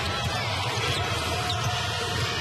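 Basketball being dribbled on a hardwood court over steady arena background noise.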